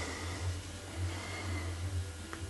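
A steady low hum with a faint background hiss and no distinct event.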